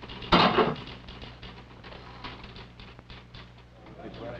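A short, loud clatter about a third of a second in, then scattered light clicks of typewriter keys over a faint hum.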